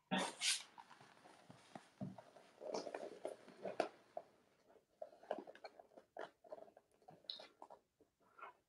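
Faint, scattered rustles and small clicks of hands handling and folding a vinyl zippered bag, coming in short bursts.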